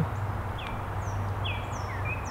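Small songbird giving short falling chirps, about six in two seconds, alternating between a higher and a lower pitch, over a steady low hum.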